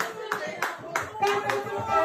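Handclaps in a steady rhythm, about three a second, over music with a voice singing.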